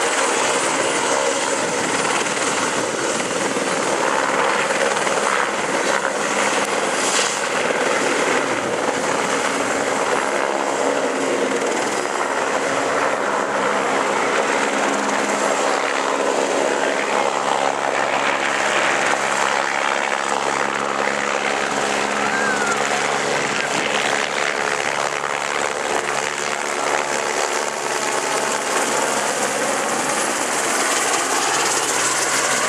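POLAIR 1 police helicopter running at take-off power as it hovers and lifts off, its turbine and main rotor making a loud, steady din.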